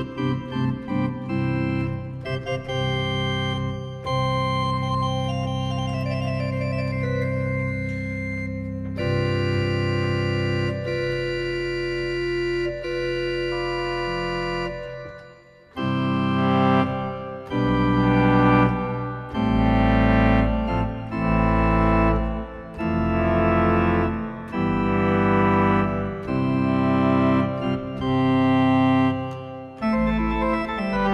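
Sampled pipe organ from the Omenie Pipe Organ iPad app. It plays sustained chords over a deep pedal bass for about fifteen seconds, dips briefly, then plays a run of short, detached full chords about one a second.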